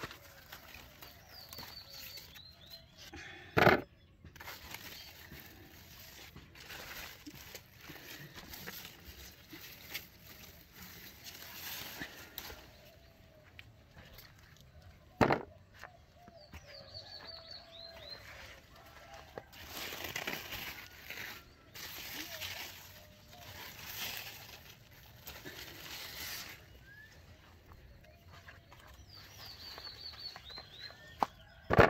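Cucumber vines and leaves rustling as they are handled and pushed aside during harvesting, with two sharp clicks, about four seconds in and again midway. Short high bird chirps come through a few times in the background.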